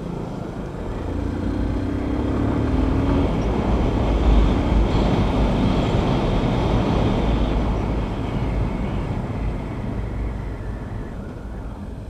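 Yamaha FZ-25's single-cylinder engine running on the move, heard with heavy wind rumble on the helmet or handlebar microphone. It grows louder over the first few seconds, then gradually eases off.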